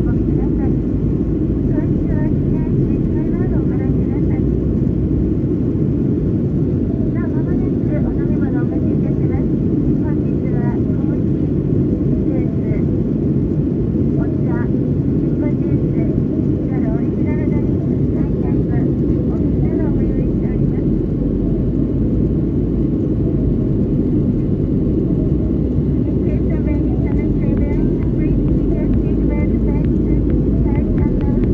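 Steady jet-airliner cabin noise, a loud low roar of engines and airflow heard from a window seat. Faint, unintelligible voices come and go beneath it.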